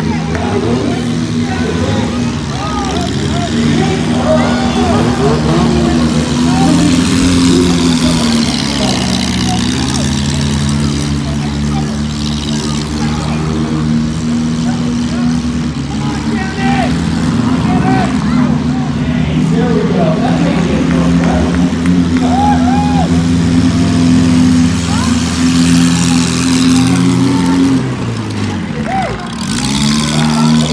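Demolition-derby car engines running loudly together as the cars manoeuvre and ram, a steady drone that dips in pitch about a third of the way in and climbs back. Voices shouting over it.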